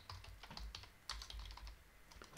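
Quiet typing on a computer keyboard: quick runs of key clicks with short pauses between them.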